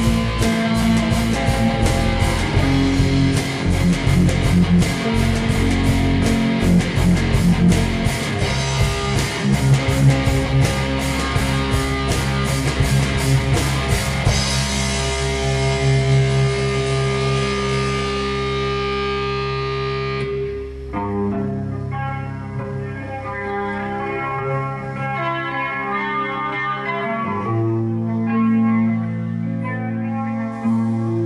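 Live heavy metal band playing: distorted electric guitars and bass over fast, dense drumming. About halfway through the drums stop and the chords ring out, giving way to slower, sparser guitar playing of single notes.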